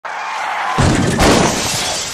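A loud crash with a shattering sound. A hissing noise breaks into two heavy impacts, just under and just over a second in, followed by a rough, noisy tail.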